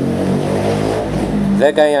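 A motor vehicle's engine running with a steady low hum and rumble. A man's voice starts speaking near the end.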